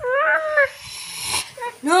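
A toddler's high, whiny call, a drawn-out "mama"-like cry at the start and another rising one near the end, with a breathy hiss between them.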